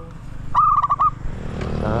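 A bird gives a quick run of about seven short, sharp call notes about half a second in. Near the end a motorbike engine comes up under it.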